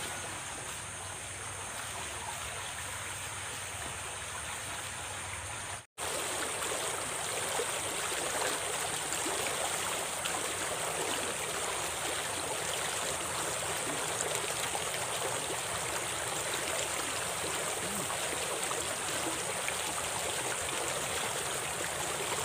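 Water running fast down a small stream channel, a steady rushing. It drops out for an instant about six seconds in, then carries on a little louder.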